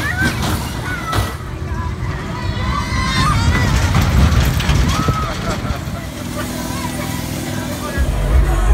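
Amusement-park ride machinery running with a steady low hum, under indistinct voices and children's chatter.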